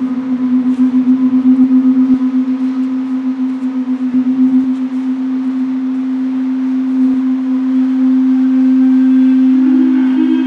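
A steady, low droning note held throughout from an amplified zither-type string instrument played through a small amp, wavering in quick pulses over the first few seconds before settling. A second, slightly higher note joins just before the end.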